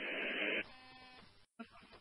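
Two-way radio squelch tail: a short burst of static hiss as the transmission ends, cutting off after about half a second, then a faint buzz for about a second before the channel goes nearly silent.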